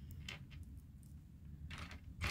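Faint clicks of small plastic miniature doll-kitchen pieces being picked out of a pile by hand, a few scattered taps with a small cluster near the end.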